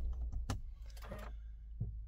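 A few faint clicks and light knocks inside a pickup truck's cab as someone settles in and handles the controls, over a low steady background rumble.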